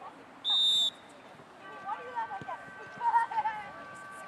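A referee's pea whistle blown once, a short loud blast about half a second in, signalling the restart of play. Shouting voices follow.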